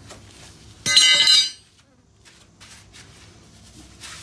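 A sudden loud metallic clatter with ringing about a second in, lasting about half a second, from loose steel mower-blade hardware being handled, with fainter clinks afterwards.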